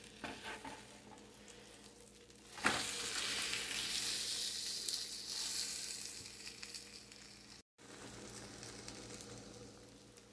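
Ramen pancake frying in melted butter in a nonstick skillet: a few light scrapes of the spatula, then a knock about two and a half seconds in as the flipped pancake lands in the pan, followed by loud sizzling that slowly dies down.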